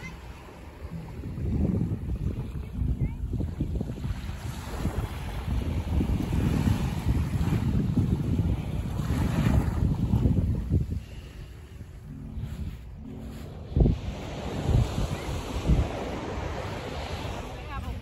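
Small waves washing onto a sandy shore, with wind buffeting the microphone, gustier through the first ten seconds or so and calmer after. A few brief thumps come near the end.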